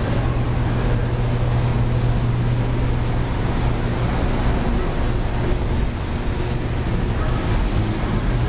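Steady road-traffic noise with a constant low hum underneath.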